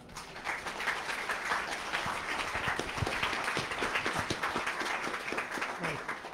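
An audience applauding, many hands clapping together. It swells up in the first half second, holds steady, and thins out near the end.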